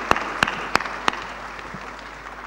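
Audience applauding, with a steady beat of claps about three a second, dying away over the last second.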